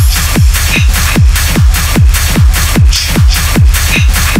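Hard techno track at 150 BPM: a heavy kick drum whose pitch drops sharply on every beat, about two and a half kicks a second, over steady high hissing percussion.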